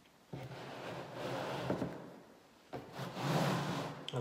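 Square painted canvas panels sliding and scraping across a table top as they are rearranged, in two long slides: one starting about a third of a second in, the other starting shortly before the end.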